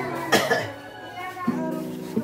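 A woman coughing, two quick coughs about a third of a second in, over background music.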